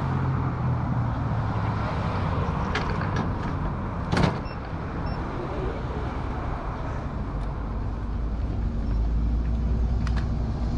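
City street traffic heard from a moving bicycle: cars passing and a steady low engine hum, with one sharp clack about four seconds in. Near the end a low engine rumble grows louder as a city bus is alongside.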